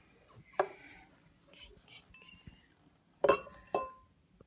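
Glass clinking: light taps early on, then two sharp clinks near the end, each with a brief ring, as the glass terrarium and its glass lid are handled.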